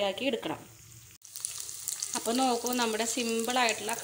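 Cooked macaroni frying in oil in a pan: a steady sizzle that starts after a sudden click about a second in.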